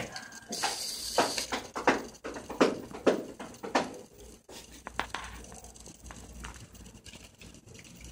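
Parallax standard hobby servo running under Arduino control, its small motor and plastic gear train whirring in a string of short bursts about half a second apart, fainter in the second half.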